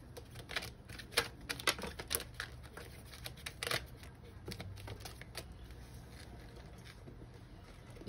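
A deck of oracle cards being shuffled by hand: a quick, irregular run of card flicks and taps that stops about five and a half seconds in.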